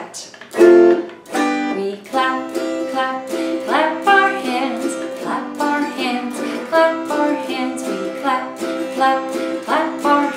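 Autoharp strummed in a steady rhythm of chords, with a woman singing a children's action song along with it.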